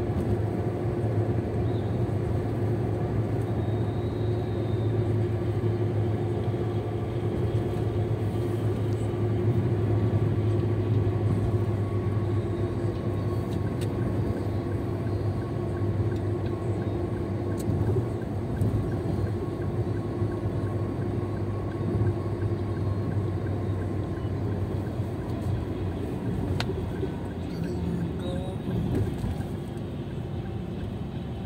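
Steady engine and tyre drone heard inside a vehicle's cabin at highway speed, easing a little near the end as the vehicle slows into a curve.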